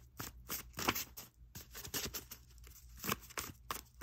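A deck of homemade tarot cards being shuffled by hand: a run of short, irregular papery flicks and slaps as the cards slide against each other.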